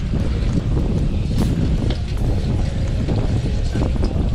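Wind buffeting an action camera's microphone on a moving bicycle: a steady, loud low rumble.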